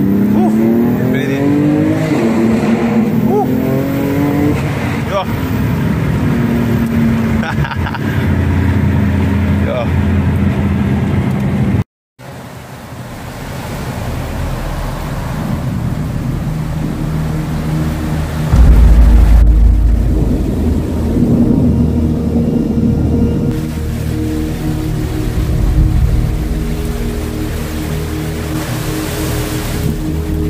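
A car engine accelerating, heard from inside the cabin, its pitch rising in repeated climbs; it cuts off suddenly about twelve seconds in. Then a steady hiss of rain, with a loud, deep rumble a little past the middle and steady musical tones underneath.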